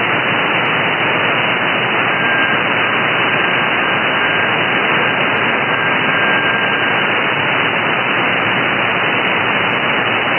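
Shortwave radio static heard in upper-sideband reception. About two seconds in, a small, thin, steady tone rises out of the hiss and fades again around seven seconds: the weak HAARP research transmitter carrier on 6900 kHz.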